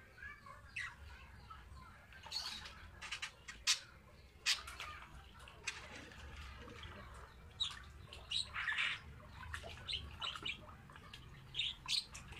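Water sloshing and splashing irregularly in a plastic bucket as a pigeon is held and dunked in a malathion wash solution, in short uneven bursts.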